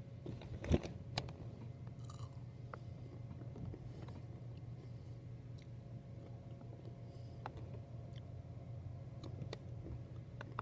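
A person chewing and crunching food close to the microphone, with a sharp click about a second in and small crunches scattered after it.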